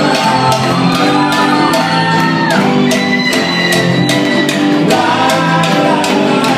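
Live piano-bar music with singing and a cowbell struck on a steady beat, a few strikes a second, with people shouting along.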